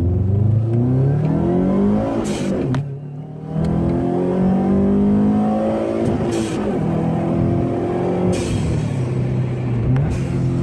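2002 Subaru WRX's turbocharged 2.0-litre flat-four, running an eBay 20G turbo on 12 psi, accelerating hard through the gears, heard from inside the cabin. The engine note climbs in pitch and breaks at about three upshifts, the first with a short lull about three seconds in, and a brief hiss comes at each shift.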